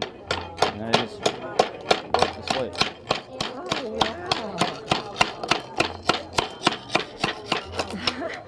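Slate hammer chopping along the edge of a roofing slate laid over an iron slate stake, cutting it to a marked line: a fast, even run of sharp cracks, about five a second.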